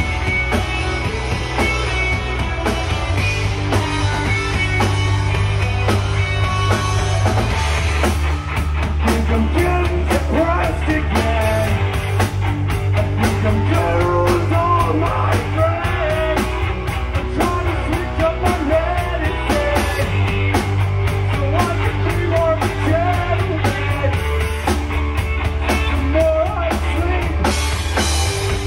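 Live rock band playing loud, with electric bass and guitar holding steady low notes. The drum kit comes in hard with dense cymbal hits about eight seconds in.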